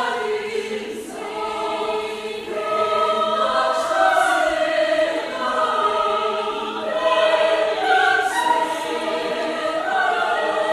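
Women's choir singing in several-part harmony, with held notes that move together from chord to chord and swell louder twice.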